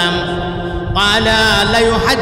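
A man's voice chanting in the long, melodic sing-song delivery of a Bangla waz sermon: a long held note softens, then about a second in a louder new phrase rises in pitch and holds.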